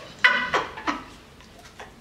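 A woman laughing in a few short bursts that fall in pitch and die away within the first second.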